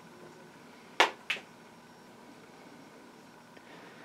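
Two sharp clicks about a third of a second apart, the first louder, over quiet room tone.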